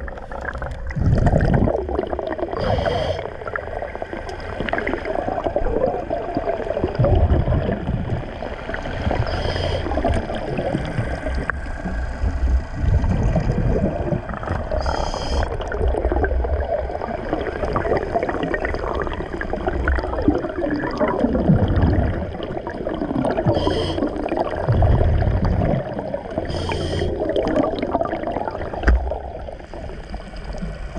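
Underwater sound of a diver breathing through a regulator: short hisses and gurgling rushes of exhaled bubbles every few seconds, over a low murky water rumble.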